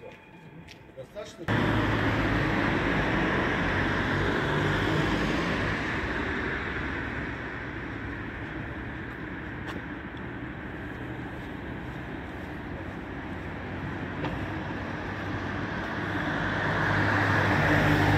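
City street traffic noise, starting suddenly about a second and a half in, with cars passing; it grows louder near the end as a vehicle goes by close.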